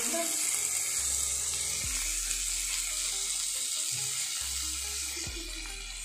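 Pieces of dried fish (sukhua) frying in oil in a steel kadai: a steady sizzle that eases slightly near the end.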